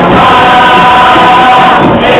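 Chirigota carnival group singing a pasodoble together as a choir, held sung notes, loud and steady.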